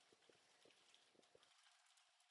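Near silence, with a few faint, irregular computer keyboard clicks as code is typed.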